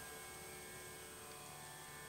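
Faint steady hum with a few thin, unchanging tones under it: the background noise of the recording.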